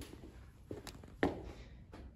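A few soft footsteps on rubber gym flooring, three short thuds, the loudest a little past halfway.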